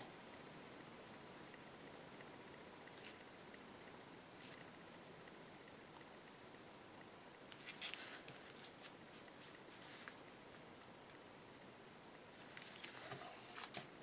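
Near silence: room tone, with faint short scratches and taps from a painted wooden cutout being handled and moved on a paper-covered table, in a cluster about eight seconds in and again near the end.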